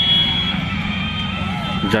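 Background din of a crowded outdoor fair, with a thin, steady high tone that is strongest in the first half second and then fades.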